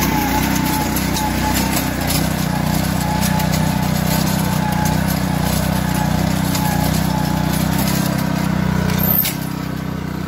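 Billy Goat self-propelled core aerator's small engine running steadily under load as the machine is walked across a lawn. The sound eases slightly with a click about nine seconds in.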